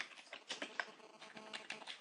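Computer keyboard being typed on: a run of faint, quick key clicks.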